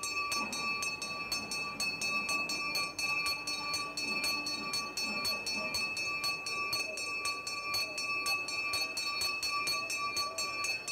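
Hand bell rung continuously in a fast, even rhythm of about four to five clapper strikes a second, its ringing tones held steady underneath.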